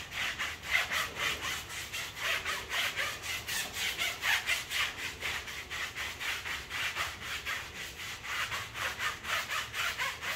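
Stiff-bristled tire brush scrubbing a wet, foamy rubber tire sidewall in quick back-and-forth strokes, about four a second. The tire cleaner is lifting the factory coating off a brand-new tire.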